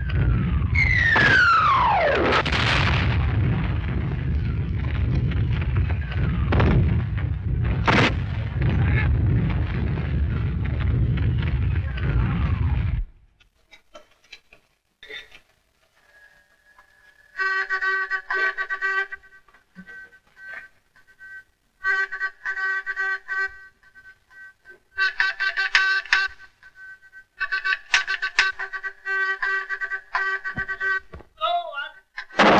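Artillery bombardment of a WWI battle scene: a heavy continuous rumble, with a shell whistle falling steeply in pitch about a second in and a couple of sharp cracks a few seconds later. The bombardment cuts off suddenly. It gives way to a field signalling buzzer sounding in repeated short bursts of Morse-like signals.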